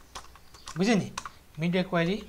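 Computer keyboard being typed on: a few scattered keystrokes entering a line of code.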